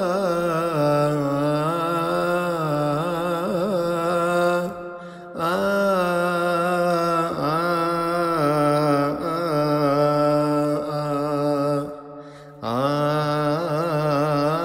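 A solo male voice sings a Coptic Holy Week psalm chant, unaccompanied, in long held notes with wavering melismatic ornaments. He pauses briefly for breath about five seconds in and again about twelve seconds in.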